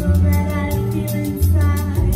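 A woman singing into a microphone over a live jazz band: upright bass playing sustained low notes, drums keeping quick even time on the cymbals, with piano and guitar.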